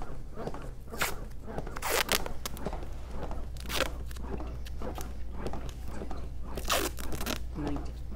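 Plastic medical packaging and IV tubing crinkling and rustling in several short bursts as IV supplies are handled.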